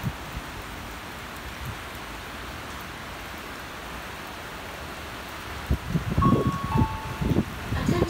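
Steady hiss of heavy rain falling outside. Near the end come a series of low thumps and two short beeps one after the other, the second a little lower in pitch.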